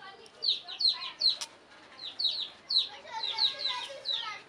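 Many short, high-pitched falling chirps in quick runs of two to four, with soft low hen clucking beneath them.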